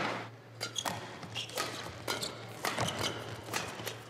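Badminton rally sounds in a large indoor hall: scattered sharp hits of rackets on the shuttlecock, and shoe squeaks and footsteps on the court, over a low steady hum.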